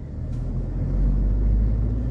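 Low rumble of a car heard from inside its cabin while driving, swelling over the first second and then holding steady.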